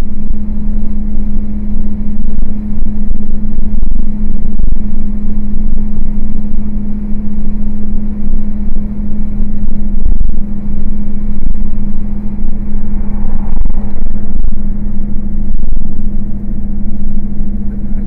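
Loud in-cab drone of a heavy truck on the move: a steady engine hum over constant low road rumble, picked up by the dashcam inside the cab.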